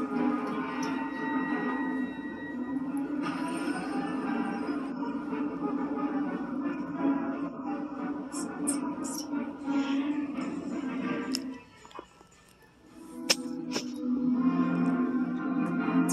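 Spooky music playing from a Halloween hologram prop's speaker. It drops out for about a second near the three-quarter mark, then comes back after a sharp click.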